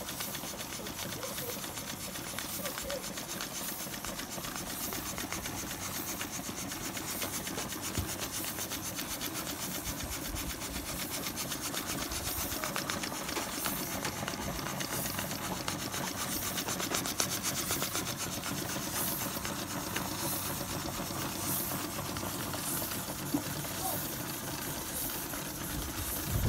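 Several vintage live-steam toy engines, a Carette and Schoenner vertical-boiler engines, running together: a steady, rapid, even ticking of their pistons and cranks under a hiss of escaping steam.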